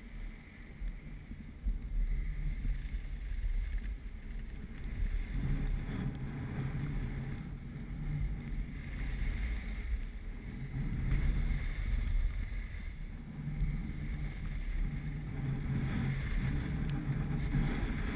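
Wind buffeting the microphone of a camera carried by a moving skier, an uneven low rumble that grows stronger about five seconds in, mixed with the hiss of skis sliding on groomed snow.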